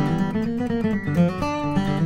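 Acoustic guitar playing a quick run of picked notes over ringing bass notes.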